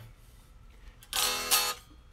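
One chord strummed on a Fender Road Worn '50s Telecaster's strings about a second in, ringing briefly before being cut short. There is a little buzz, which is typical of action set slightly too low.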